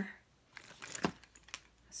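Light clicks and rustling of small leather goods being set down and arranged in a tray, with a sharp click about a second in and another half a second later.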